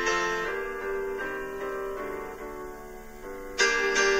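Instrumental break in a slow, gentle lullaby: soft keyboard accompaniment playing held chords and notes. It fades a little through the middle, and a louder chord comes in near the end.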